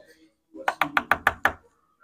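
A quick run of about eight knocks on a wooden room door, lasting about a second.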